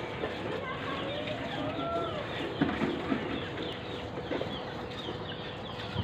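Many small birds chirping rapidly and continuously, with a few longer gliding calls about two seconds in and lower calls near the middle. A faint steady hum sits underneath.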